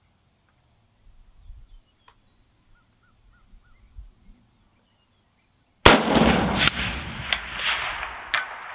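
A single shot from a USMC MC1 Garand sniper rifle in .30-06, a sharp crack about three-quarters of the way in, followed by a long rolling echo. About a second and a half later comes a fainter sharp report, in time with the bullet striking a steel plate target at 610 yards.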